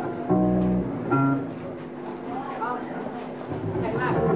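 Live band on stage: electric bass guitar plays two loud low notes about half a second and a second in, with electric guitar and voices underneath.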